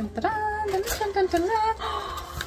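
A woman's voice in a drawn-out, sung exclamation, held on long notes that waver and dip in pitch: an excited vocal reaction as the box is opened.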